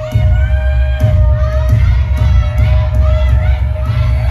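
Concert audience cheering and screaming over loud live pop music with a heavy pulsing bass and a steady held note.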